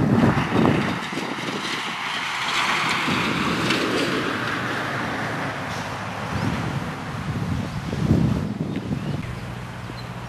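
Wind buffeting the microphone in irregular low rumbling gusts, over a steady rushing hiss that is strongest in the first few seconds.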